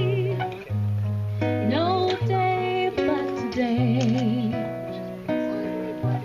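Live acoustic guitar accompanying a woman singing, with low plucked notes changing about once a second under a voice that slides between notes and wavers with vibrato.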